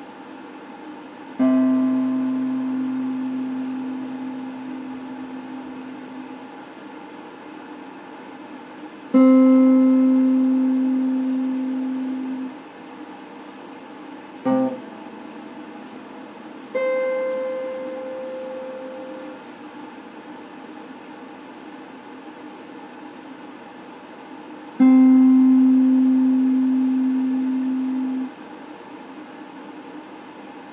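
Electric guitar played slowly: about five single notes or chords, each struck and left to ring and fade for a few seconds, with pauses between. One is only a brief stab, about halfway through.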